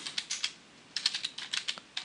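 Computer keyboard keystrokes in two quick runs of clicks with a short pause about halfway between them.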